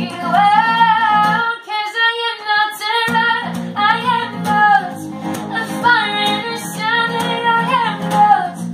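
Steel-string acoustic guitar played live with a woman singing a held, gliding melody over it. The guitar's low notes drop out for about a second and a half near the start, then return.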